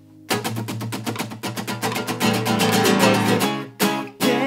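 Acoustic guitar strummed hard and fast in a Spanish, flamenco-style pattern of rapid, dense strokes. It breaks off briefly near the end and then starts again.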